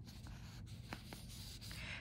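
Fingertip and fingernail moving over a printed paper pattern sheet: a faint scratching on paper with a few light ticks.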